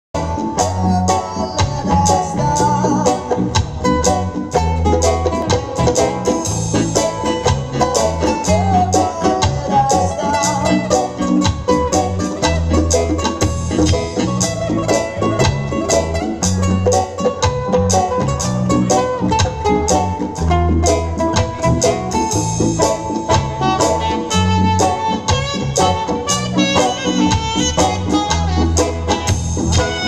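Acoustic reggae band playing a steady groove: strummed acoustic guitar and a djembe over a deep bass line, with a melodic lead line above.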